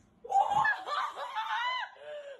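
A woman laughing loudly in high-pitched squeals, breaking out suddenly about a quarter second in and running on in rising and falling bursts.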